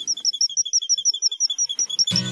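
Cartoon sound effect of a rapid, perfectly even run of short high chirps, about eight a second, with the background music dropped out.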